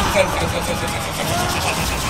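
A man's wordless, drawn-out vocalising, the comic death throes of a king run through by a sword, over a steady rushing noise.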